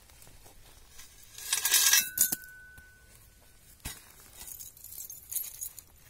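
Gold-coloured chains and jewellery tipped off a shovel onto the ground, a clinking jumble about a second and a half in, with one piece left ringing on a clear tone for over a second. Scattered light clinks follow as the pieces are handled.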